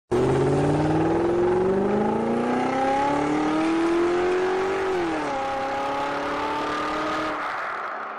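Sound effect of a car engine accelerating, its pitch rising steadily for about five seconds, then dropping suddenly and holding as it fades near the end, over a hiss of tyre and road noise.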